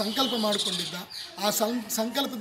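A man talking, with a short pause about a second in; faint bird calls in the background.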